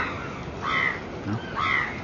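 A bird calling twice, about a second apart, in two short calls.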